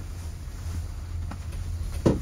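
Steady low rumble inside a moving gondola cabin running along its cable, with a couple of faint light clicks.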